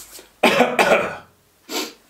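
A man coughing to clear his throat: a harsh double cough about half a second in, then a shorter burst near the end.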